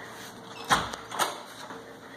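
Two short knocks about half a second apart, over faint handling noise.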